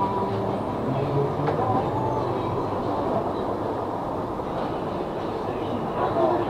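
Steady rumbling and rustling noise from a camera being carried while walking, with faint background music fading out after about two seconds.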